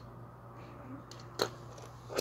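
A single short, sharp tap about a second and a half in, a small plastic toy set down on a wooden floor, over a faint steady hum.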